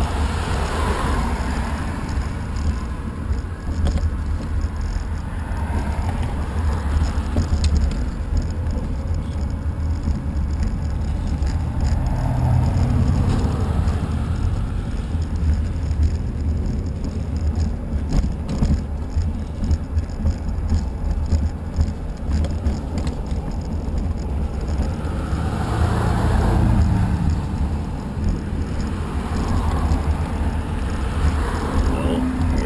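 Cars passing on the road alongside, their sound swelling and fading near the start, around the middle and again near the end, over a steady low rumble of wind on the moving microphone.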